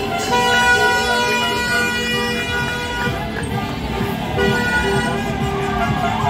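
Horns honking in long held blasts over the noise of a celebrating crowd: one blast of several tones together from just after the start to about three seconds in, then a shorter one a little past the middle.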